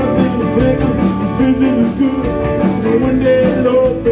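Live band playing a fast rock-and-roll number on electric guitar, bass guitar, drums and fiddle, with a steady drum beat of about four strokes a second.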